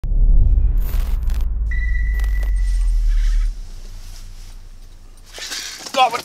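A loud deep rumble with a steady high tone over it for about a second, cutting off abruptly about three and a half seconds in. Near the end a spinning reel is cranked, with clicking handling noise.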